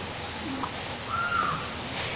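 A faint single arching call, most likely a bird, about a second in, over a steady low hiss of room noise.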